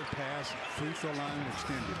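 A basketball being dribbled on a hardwood court, heard faintly under a TV play-by-play commentator's voice.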